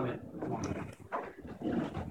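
A congregation answering "Amen" together in a ragged chorus of voices, followed by quieter, irregular sounds from the people in the room.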